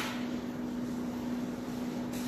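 Steady low hum holding one constant tone, over a faint even hiss: room tone.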